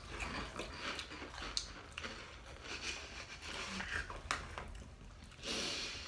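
Several people chewing crunchy puffed corn snacks (Cheetos Sweetos, cinnamon-sugar puffs), giving faint, irregular crunches and mouth sounds. A short breathy rush comes near the end.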